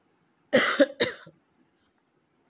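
A person coughing twice in quick succession, about half a second apart.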